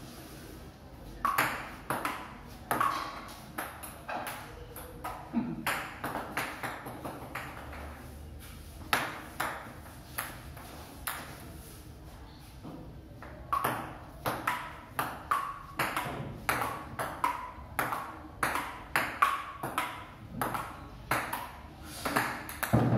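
Table tennis ball clicking off bats and bouncing on a wooden board table, first in short rallies with pauses, then in a longer rally of about two hits a second through the second half. Some hits leave a brief ring.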